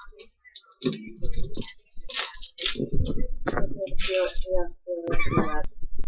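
Kitchen knife chopping garlic on a plastic cutting board, giving light, irregular clicks of the blade against the board. Indistinct talking runs over it and is the loudest sound.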